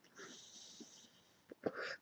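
A man's breathing close to the microphone: a faint, hissy breath lasting about a second, then a second, shorter breath near the end.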